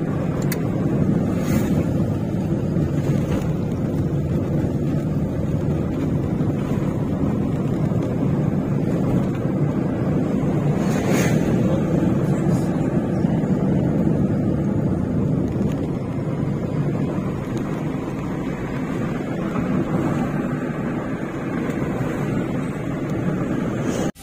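Steady engine and road noise of a vehicle driving along a road.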